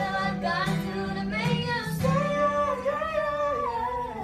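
A woman singing live to an acoustic guitar accompaniment: short sung phrases, then one long held note that slides down near the end.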